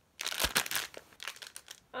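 Plastic bag of a dog dental chew crinkling as it is handled: a dense crinkle for most of a second, then a few lighter crackles.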